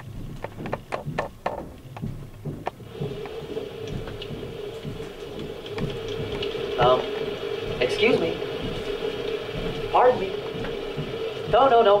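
Rapid clicks, then the soundtrack of an animated educational video starting through the room's speakers: from about three seconds in, a steady hum with a few short cartoon sound effects that bend in pitch.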